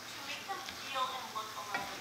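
A wooden spatula stirring chopped greens and chicken in a frying pan, the food sizzling, with a couple of sharper scrapes of the spatula against the pan.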